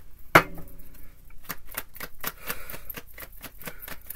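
Tarot cards being shuffled by hand: a quick run of light card clicks and slaps, about five or six a second, with one louder snap about a third of a second in.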